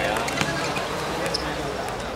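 Football being kicked and bouncing on a hard court, a few sharp knocks over the shouts and chatter of players and onlookers.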